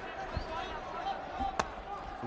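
Kickboxing strikes landing in the ring: a dull thud about half a second in and a sharp crack a little past the middle, over background voices in the arena.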